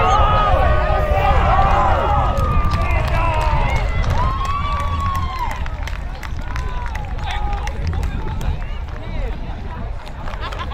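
Several voices shouting and calling out at once, busiest in the first few seconds and sparser after. Under them runs a steady low wind rumble on the microphone.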